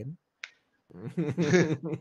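A single short, sharp click, then men laughing.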